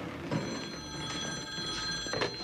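A telephone ringing: one long, steady ring that starts about a third of a second in and stops right at the end.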